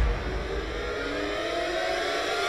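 A trailer sound-design riser: a sustained whine of several tones sliding slowly upward together, building tension.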